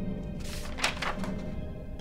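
Low, sustained film-score music, with a short burst of rustling and a knock from papers being handled, about half a second to a second in.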